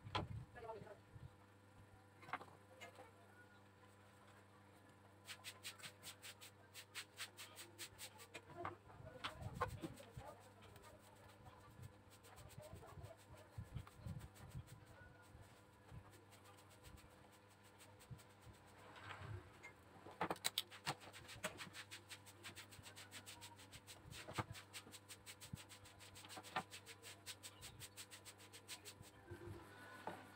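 Faint clicks and taps of multimeter test probes and hands on a TV circuit board, with two short runs of rapid ticking, over a low steady hum.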